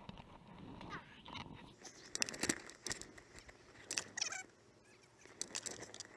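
Rustling and clicking of fishing gear being handled and packed up, including collapsible fabric buckets, with a short falling squeak about four seconds in.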